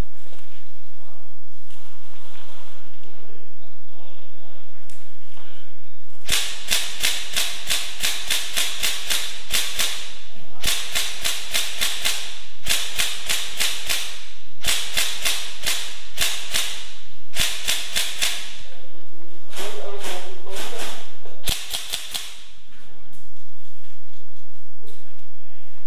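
Airsoft guns firing strings of rapid shots. The firing starts about six seconds in, stops briefly, then a final burst comes near the end.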